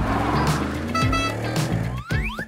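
Upbeat background music with a car engine sound for a toy taxi driving by, its pitch rising in short sweeps and a quick upward glide at the end.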